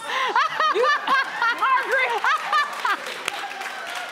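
Women laughing in short repeated bursts, with a few spoken words. The laughter fades to a softer murmur in the last second or so.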